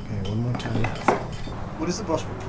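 Blacksmith's iron tools clinking and knocking against hot iron on the anvil, with one sharp metallic strike about a second in.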